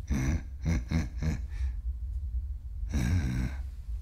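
A man's voice making short wordless sounds: a quick run of four or five chuckles or hums about a second in, then a longer sigh-like "mm" near the end. A steady low hum runs underneath.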